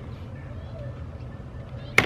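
Low steady background hum, then right at the end a single sharp, loud click: a combination wrench knocking against the nut on a car battery terminal as it is fitted.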